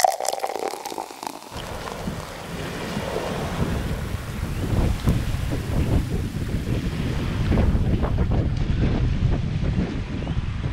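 Wind buffeting the microphone, setting in about a second and a half in, with small waves lapping and splashing on a lakeshore.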